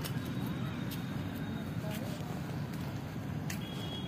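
Steady low rumble of outdoor background noise with a few faint clicks.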